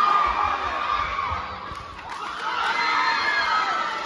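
A large crowd of young spectators shouting and cheering, many high voices overlapping. It dips about halfway through and swells again.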